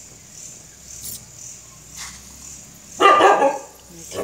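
A dog barking, two quick loud barks about three seconds in.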